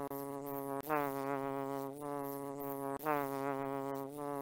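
Cartoon bee buzzing sound effect: a steady, pitched buzz that breaks off and starts again about a second in and again about three seconds in.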